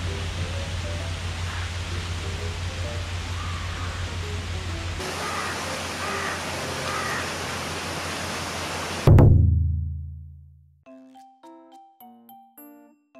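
Steady rush of a water cascade falling down a rock face, the outflow of an old man-made water channel. About nine seconds in it gives way to a single loud deep thud that rings out and fades, followed by light chiming music near the end.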